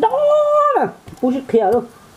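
A long, high-pitched vocal cry, held level for most of a second and then falling away, followed by a few short voiced sounds.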